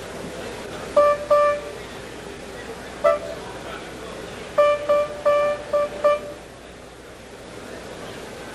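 A grand piano sounding one note at a time, the same pitch each time, in short test strikes: two, then one, then a quick run of five, as a part inside the piano is being shimmed and checked.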